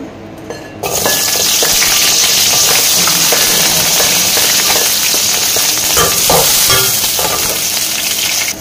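Chopped shallots dropped into hot oil in an aluminium wok: a sizzle starts suddenly about a second in and runs on steadily as they fry. Near the end a metal spatula stirs them, scraping and clinking against the pan.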